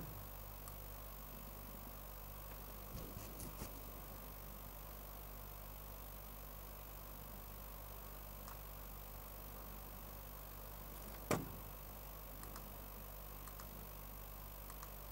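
Quiet room tone with a steady low electrical hum. A few faint clicks come about three seconds in, and a single sharper tap or knock comes near the end.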